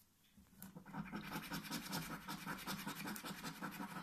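Scratchcard being scratched off by hand in rapid, repeated scraping strokes, starting about half a second in.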